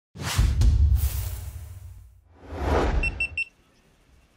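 Edited intro sound effects: a deep whooshing boom with two sharp cracks, fading over about two seconds, then a second whoosh that swells and ends in three quick high beeps before cutting off suddenly.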